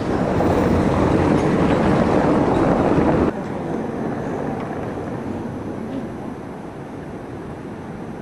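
Outdoor street ambience picked up by the camera microphone: a loud rushing noise for the first three seconds stops abruptly at an edit. Quieter steady background noise follows.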